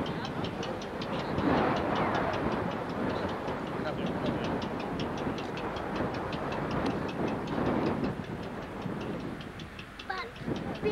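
Goodyear blimp's propeller engines running close by: a steady mechanical drone that swells and dips, with a fast regular ticking of about four a second on top.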